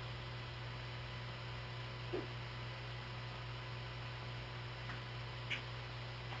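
Steady low electrical hum with faint hiss, with a faint brief knock about two seconds in and a small click near the end.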